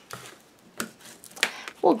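Paper and cardstock being handled and pressed against a tabletop, with two short sharp clicks a little over half a second apart.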